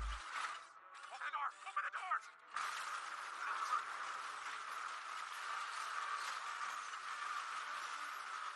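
Soundtrack of an animated episode played at low level: a character's voice briefly, then from about two and a half seconds in a steady noisy sound effect that runs on.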